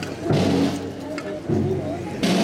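Procession band music: low held brass-like notes with slow drum strokes about once a second, some with a cymbal crash, over crowd voices.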